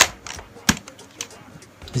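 Hard plastic clicking as a 3D-printed front sight piece is pushed onto a Nerf blaster's barrel and seats in its friction fit: a sharp click, then a second one under a second later, with a fainter tick after.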